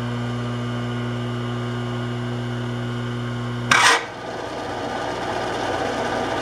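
Drilling machine's motor running with a steady hum. Nearly four seconds in comes a short loud clatter, after which the hum gives way to a rougher, uneven running noise, as the spindle is slowed for a larger drill bit.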